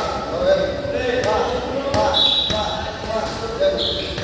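Boxing gloves punching focus mitts: a series of sharp smacks, about one a second, with voices in the gym behind. Two short high squeaks come a little past two seconds in and near the end.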